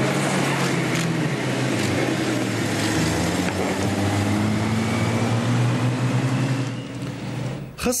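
A car's engine running and slowly rising in pitch as the car pulls away, over a steady din of outdoor noise and voices; it cuts off near the end.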